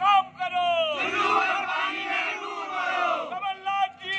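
A group of men shouting protest slogans: one voice calls out, then many voices shout together for about two seconds, followed by more short shouts.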